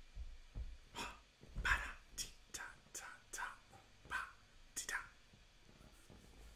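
A man whispering softly: short, breathy, voiceless syllables with gaps between them.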